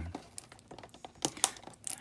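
Stiff clear plastic blister crinkling and clicking as it is pried away from its glued cardboard card, with a few sharp cracks about a second and a half in.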